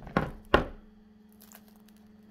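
Two sharp knocks, about a third of a second apart, as the crisp-crusted baked pizza is handled and tipped against a hard surface. The second knock is the louder. A low steady hum follows.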